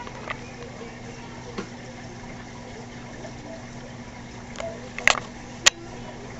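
Steady low hum and watery hiss of a store aquarium rack's filtration and water circulation, with a few sharp clicks, the loudest two near the end.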